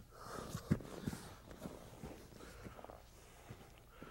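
Faint rustling of clothing and bodies shifting on a padded mat, with a few soft thumps and heavy breathing.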